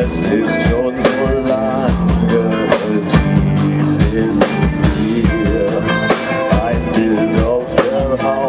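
Live rock band playing at full volume: drum kit with steady hits under electric guitars and bass.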